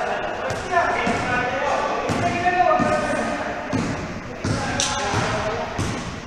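A basketball bouncing on an indoor court amid players' indistinct shouts, which are strongest in the first half. The sound echoes in a large gym hall.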